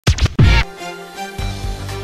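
Intro music: two quick record-scratch-like sweeps, then the opening of a TV news theme, with a low beat coming in about one and a half seconds in.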